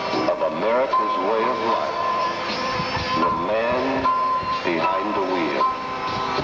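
A man's voice, sung or declaimed, over a country music backing from a truck-driver recitation record, with a steady high-pitched tone running underneath.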